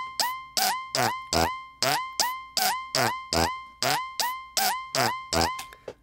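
Electronic drum loop made with the Rhino Kick Machine synth plugin: a hit about every 0.4 seconds, each a sharp click that drops in pitch into a ringing tone near 1 kHz, with deeper kick hits on some beats. It stops just before the end.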